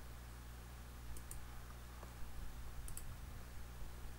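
Computer mouse clicking: two quick double clicks, about a second and a half apart, over a faint steady low hum.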